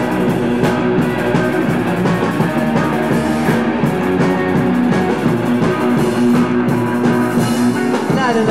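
A live rock band playing an instrumental passage with no vocals: electric guitars, bass guitar and a drum kit, the drums keeping a steady beat.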